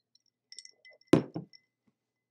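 A glass clinking lightly with a faint ring, then set down on a hard surface with two knocks about a quarter of a second apart.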